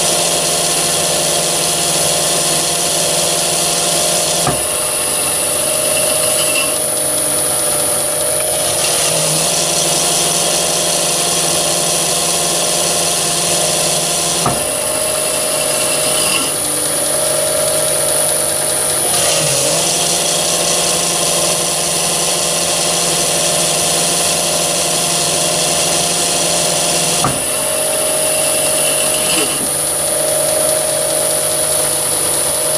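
Myford ML7 lathe running with a steady motor and belt-drive hum while its spindle disc brake is worked by hand; a few sharp clicks come from the brake lever and caliper, and the high hiss drops away and returns several times.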